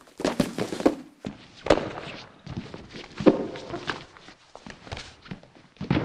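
Wrestlers' bodies and shoes thudding and scuffing on a wrestling mat during a lift-and-roll takedown: several sharp thuds with short gaps between, the loudest about three seconds in.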